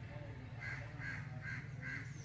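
A bird calling four times in quick succession, about two calls a second, from roughly a third of the way in, over a faint low steady hum.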